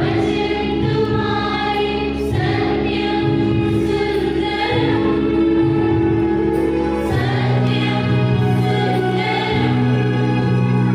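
Choir singing a hymn over sustained accompaniment chords; the low chord changes about seven seconds in.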